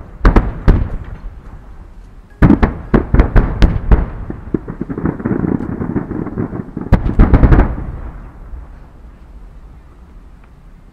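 Aerial fireworks going off: a few sharp bangs at the start, a rapid volley of bangs a couple of seconds in followed by crackling, another tight cluster of bangs later, then the sound dies away.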